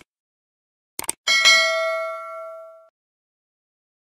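Subscribe-button animation sound effect: two quick mouse clicks about a second in, then a bell ding that rings out and fades over about a second and a half.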